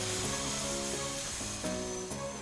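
Cartoon background music with steady held notes, over a long airy blowing hiss from a character blowing at a birthday candle.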